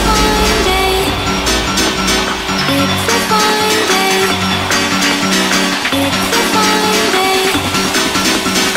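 Hard house electronic dance music from a DJ mix, with a repeating synth riff over a driving beat. A deep sustained bass note drops out about two and a half seconds in, leaving the riff.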